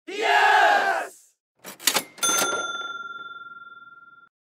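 Intro sound effect: a loud yelled voice, then a few sharp clicks and a single bright bell ding that rings out and fades over about two seconds.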